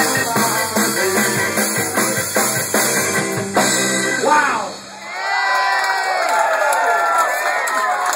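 Live ska band with trombones, bass and drums playing the last bars of a song, which ends about four and a half seconds in; the crowd then cheers, whoops and whistles.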